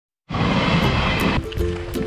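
A passing train running by, loud, for about a second, then cut off abruptly, followed by background music with held notes.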